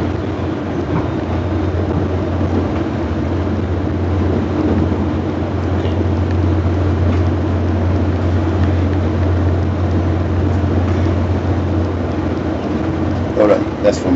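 Steady rumble and low hum inside a moving commuter train's passenger car, with a short voice sound just before the end.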